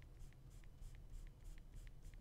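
Stylus nib flicking short strokes across a graphics tablet's surface: faint quick scratches, about four or five a second, as fur is drawn with full pen pressure.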